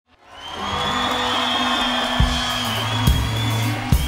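Live rock band music fading in: a held high tone over sustained bass notes, with three drum hits in the second half.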